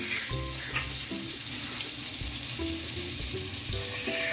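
Melted butter and a little oil sizzling steadily in an aluminium caldero on the stove: the fat is hot and bubbling, ready for the noodles to be toasted.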